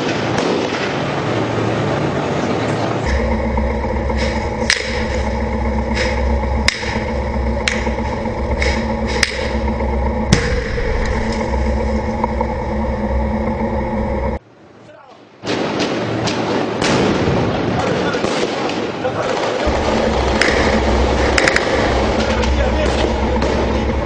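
Combat sound: a heavy engine running steadily, with a string of sharp, separate shots over it and voices in the background. The sound cuts out for about a second midway, then continues as rougher noise with a few more cracks near the end.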